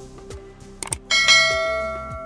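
Subscribe-button sound effects: a quick mouse click just before a second in, then a bright notification-bell chime that rings on and slowly fades. Background music with a steady beat runs underneath.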